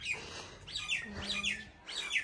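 A small bird chirping: a quick string of short, falling chirps, about four a second, starting about half a second in.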